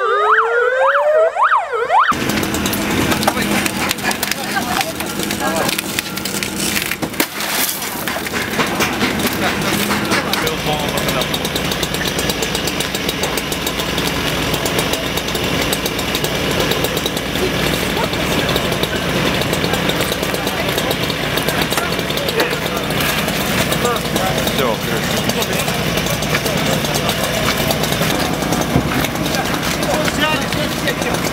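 An ambulance siren wails with rising and falling sweeps and is cut off about two seconds in. After that comes a busy roadside rescue scene: overlapping voices, metal clatter and knocks over a steady background noise.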